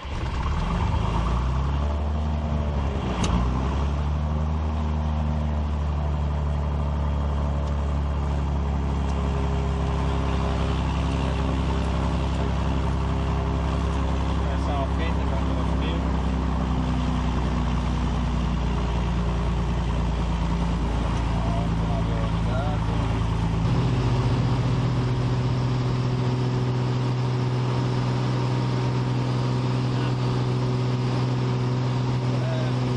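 Six-cylinder piston engine of a Piper PA-32 Cherokee Six catching on start-up and settling into a steady run, heard from inside the cockpit. About three-quarters of the way through, the engine note changes and grows a little louder.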